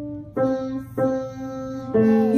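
Single notes played slowly, one at a time, on a grand piano: a held note fades out, then three notes are struck one after another, each left to ring.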